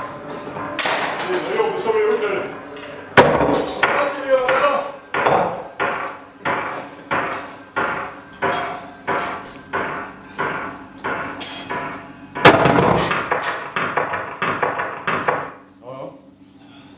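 Live noise music from electronics and effects pedals: harsh, processed sounds with two sharp, loud hits about three seconds in and near twelve and a half seconds. Between them comes a run of repeated attacks, about one and a half a second.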